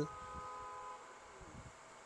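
A faint steady whine of several pitches that fades out after about a second, leaving low room tone.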